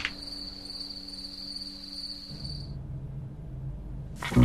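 A cricket trilling on one high steady note, which stops about two-thirds of the way through, leaving a faint low hum.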